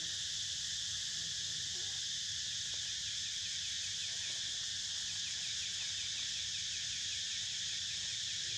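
Steady, high-pitched drone of an insect chorus, with a faster pulsing insect call joining in about three seconds in.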